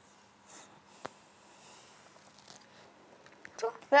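Quiet handling sounds of a caviar tube being squeezed onto a spoon, with one light click about a second in.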